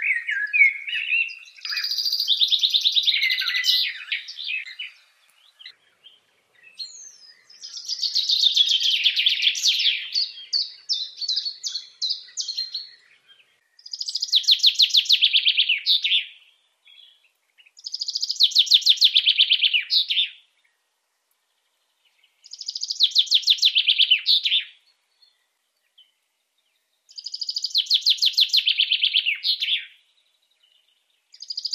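A bird singing the same fast, trilled song phrase over and over, each phrase about two seconds long with gaps of two to three seconds between them.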